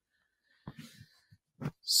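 Mostly quiet, with a few faint short breathy noises and small mouth clicks from the speaker between phrases, then his voice starting again near the end.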